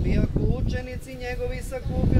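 Orthodox priest chanting a liturgical reading from a book in Serbian, his voice held on long, nearly level notes in the manner of an intoned Gospel reading.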